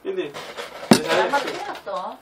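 Men talking, with one sharp clink of tableware about a second in.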